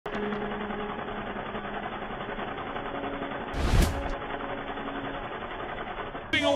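Logo intro sound effect: a steady noisy drone with faint low humming tones, and a short whoosh-like hit with a deep boom about three and a half seconds in, the loudest moment.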